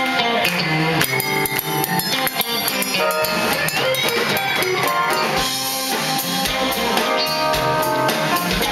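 A rock band playing live: electric guitars, organ and keyboard over a drum kit, in an instrumental passage. About halfway through, a note slides up and holds.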